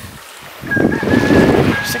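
Domestic pig giving a rough, pulsed grunting call that starts about half a second in, with a thin steady high tone running above it.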